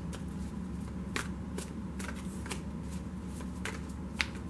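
A large tarot deck being shuffled overhand by hand, the cards sliding and snapping against each other in irregular soft clicks, several a second, over a steady low hum.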